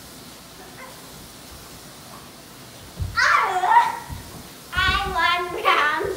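Children's excited wordless squeals and laughter, starting about halfway through after a few seconds of quiet room sound, with a few soft thumps.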